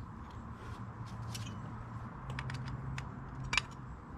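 Scattered light clicks and ticks of hand tools and small parts being handled, over a steady low hum; one sharper click about three and a half seconds in.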